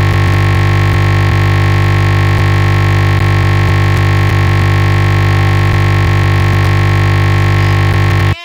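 Loud, steady, unchanging buzz: a crashed Windows virtual machine's sound output stuck repeating one tiny stretch of its audio buffer, the stuck-audio sound that comes with a blue-screen stop error.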